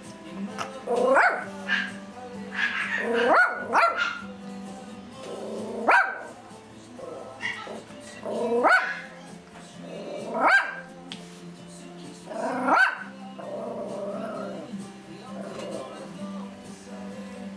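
Toy poodle barking: about seven short barks, spaced roughly two seconds apart.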